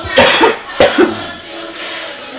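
A man coughing hard several times in quick succession into his hand, a smoker's cough from the bong smoke, with a quieter hip-hop track playing under it.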